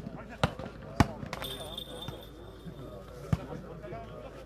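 A volleyball being struck by players' hands during a rally: sharp slaps about half a second in, at one second (the loudest), just after that, and again about three and a third seconds in. Spectators murmur underneath.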